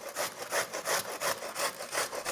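Peeled raw golden beetroot grated on the coarse side of a metal box grater, in quick, even scraping strokes about four a second.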